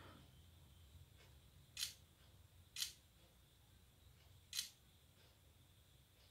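Smartphone camera shutter sound from a OnePlus 8 Pro, three short clicks as photos are taken. The second comes about a second after the first and the third nearly two seconds later.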